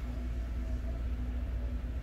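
Steady low background hum with a few faint steady tones above it: room tone with no distinct event.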